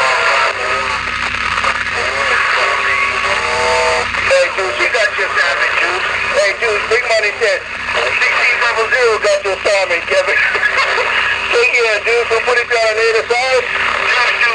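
Voices of other stations coming through a CB radio's speaker, garbled and unintelligible, over a steady hiss of band noise.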